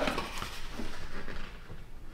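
Soft rustling and handling of cardboard and paper packaging as items are lifted out of a shipping box, with a few light taps, fading toward the end.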